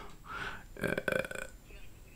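A man's faint, drawn-out, creaky 'uh' hesitation between phrases of speech, with quiet room tone after it.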